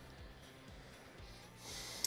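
Faint background music, then a short, sharp intake of breath near the end.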